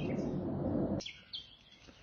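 Outdoor background noise with a few short, high bird chirps about a second in; then the sound cuts off suddenly to near silence.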